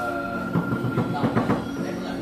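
Foosball table in play: a quick run of clacks and knocks from the rods, players and ball, bunched from about half a second to a second and a half in, over a steady background hum.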